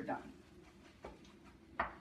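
A wooden spatula knocking against a skillet of scrambled eggs: a faint knock about a second in and a sharp, louder one near the end.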